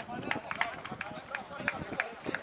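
Pitch-side sound of an amateur football match: faint, distant shouts of players, with a series of sharp taps about three a second.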